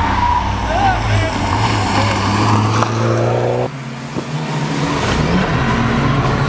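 Rally car engines at speed: one engine note climbs in pitch for about a second and cuts off abruptly just past the middle, and another car's engine follows. Voices shout over the engines.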